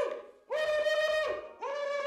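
A man hooting long, horn-like notes through a hand cupped at his mouth, all on one steady pitch: two held notes with a short break between them.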